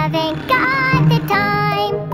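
A children's song: a high voice sings drawn-out notes over a steady band accompaniment, with a short break about two-thirds of the way through.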